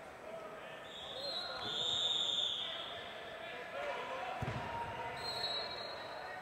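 A referee's whistle blows in a large echoing hall: a long high blast from about one to three seconds in, then a shorter one near the end. A dull thump comes about four seconds in, over the murmur of voices around the gym.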